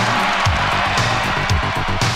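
Instrumental passage of a pop record played from an analog vinyl LP: the band plays with no singing.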